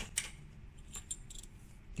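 Faint metallic clicks and light rattling of metal screw-on circular cable connectors being handled, with one sharper click just after the start and a few fainter ticks about a second in.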